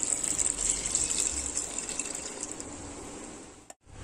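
Water being poured into a pressure cooker over dal and vegetables, a steady gush that grows quieter as the pour goes on and cuts off just before the end.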